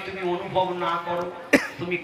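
A man's voice speaking through a microphone, with a single short cough about one and a half seconds in.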